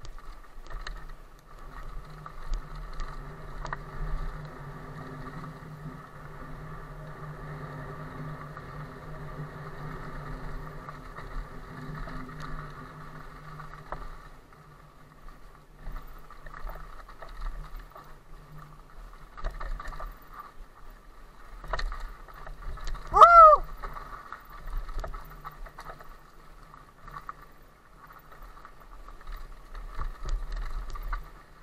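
Cube Stereo Hybrid 160 electric mountain bike ridden fast along a forest trail: a steady whir with rattles and knocks from the bumps. There is one short, loud squeal about three quarters of the way through.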